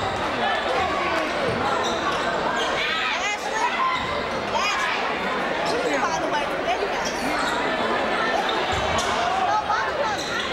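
Basketball dribbled on a hardwood gym floor, with players and spectators calling out and talking over it in a large gymnasium.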